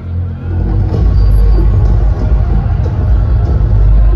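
Concert PA system playing a loud, deep bass rumble that swells up about half a second in, as part of a live show's opening intro.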